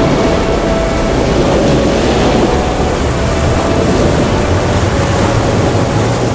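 Loud, steady rush of choppy sea water and a large ship's bow wave breaking, with wind and a low rumble underneath.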